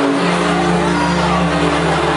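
A steady, low droning tone with a buzzy stack of overtones, played over the banquet hall's sound system as part of the dance soundtrack, with crowd noise beneath. It starts abruptly and holds without change.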